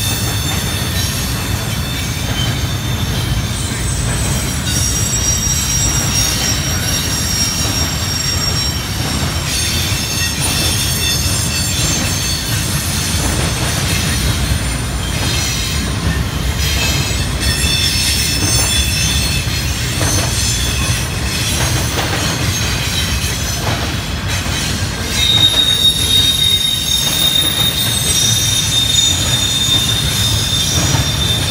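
Long CSX intermodal freight train of double-stacked container cars rolling past, a steady low rumble with high-pitched wheel squeal that comes and goes. About 25 seconds in, the train gets louder and a single steady high squeal sets in and holds.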